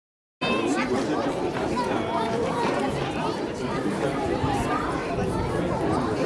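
Chatter of several people talking at once, with no single clear voice. The sound cuts in a moment after the start, following a brief silence.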